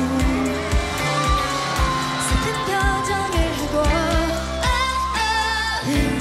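Female K-pop vocalist singing live into a handheld microphone over a pop backing track with a steady drum beat.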